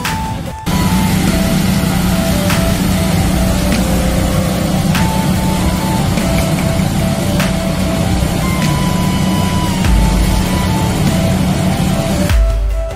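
A high-pressure sewer jetter's pump runs steadily with the hiss of its water jet, under background music with a stepping melody.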